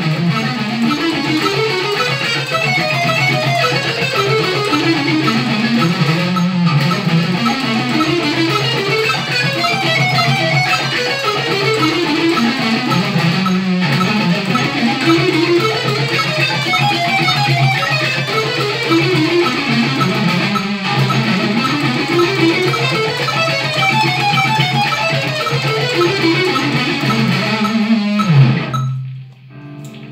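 Electric guitar, tuned a whole step down to D, playing a fast chromatic exercise in alternate-picked sixteenth notes, four notes per beat, climbing across the strings to the high E and back in repeating runs of about seven seconds. The playing stops near the end.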